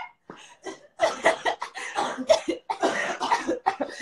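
A woman coughing hard: a rapid run of short bursts starting about a second in and lasting about three seconds.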